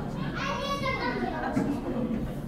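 A child's high-pitched voice calling out for about half a second, a little way in, over a steady murmur of other people's voices in a large room.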